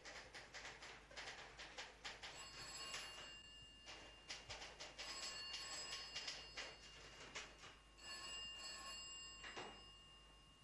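Telephone bell ringing faintly, with a rapid clatter of strikes and three rings of about a second and a half to two seconds each.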